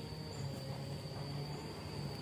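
Insects chirring in a steady high-pitched drone over a low hum.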